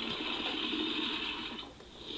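Electronic sound from a baby's activity-centre toy: a steady hissing rush through a small speaker, dropping out briefly near the end.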